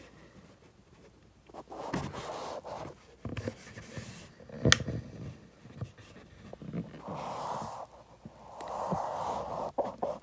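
Quiet close-up noises: soft hissing rustles in three stretches of about a second each, and one sharp click near the middle.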